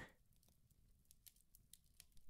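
Near silence: room tone, with a few very faint clicks in the middle.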